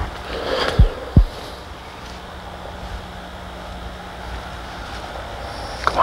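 Wind rumbling on a camcorder microphone, with two dull low thumps about a second in and a faint steady hum underneath.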